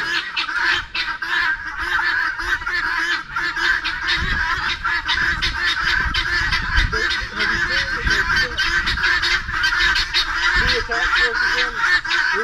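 A flock of helmeted guinea fowl calling without a break, many harsh, rapid, overlapping cries, with a few lower calls from other poultry later on.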